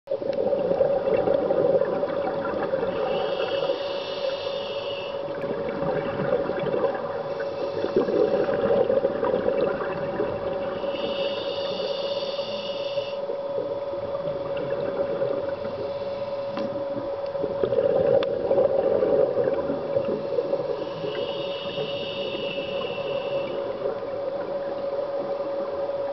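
Underwater recording of a scuba diver breathing through a regulator: a whistling hiss on each inhalation, coming every several seconds, alternating with rushing swells of exhaled bubbles, over a steady hum.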